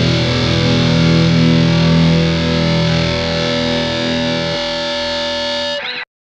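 The closing bars of a hardcore punk song: distorted electric guitar and band sustaining a final chord. The low notes drop out about four and a half seconds in, and the music cuts off just before the end.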